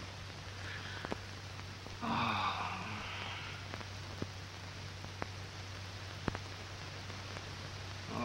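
Surface noise of an early-1930s optical film soundtrack: steady hiss and a low hum, with scattered crackles and pops. A brief, faint, louder sound comes about two seconds in.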